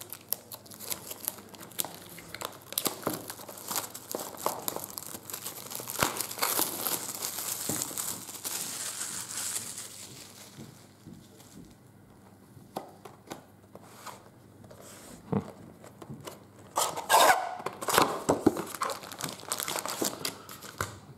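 Plastic shrink-wrap being picked at and peeled off a trading-card box, crinkling and tearing. Quieter for a few seconds past the middle, then louder crackling near the end as the cardboard box is opened and its foil card packs are handled.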